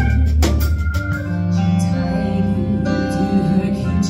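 Live band music from a keyboard, a drum kit and a female singer: a few drum and cymbal hits right at the start, then long sustained chords and held notes.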